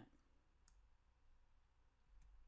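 Near silence: faint room tone with a single brief, faint click about a third of the way in.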